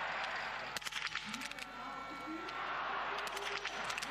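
Small-bore biathlon rifles firing on the standing range: a series of sharp shots at uneven intervals over a steady stadium crowd hum.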